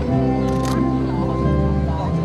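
Music with long, steady held notes, and a brief sharp noise about two-thirds of a second in.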